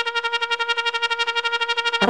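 Background music: a single held synthesizer note pulsing rapidly, about ten times a second.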